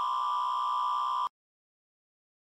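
Final held synthesizer note ending a drum and bass track: a single steady high tone that cuts off suddenly about a second and a quarter in.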